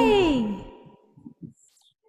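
A singer's drawn-out final "hey" at the end of a song, gliding down in pitch and fading out within about half a second, followed by faint low knocks.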